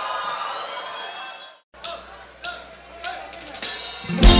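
The tail of a live song dying away, a brief dead-silent gap where two tracks are joined, then a few sharp hi-hat taps from the drummer with faint crowd noise and voices.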